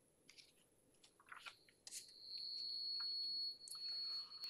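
A few faint clicks and rustles, then a steady high-pitched electronic tone that starts about halfway through and holds at one pitch.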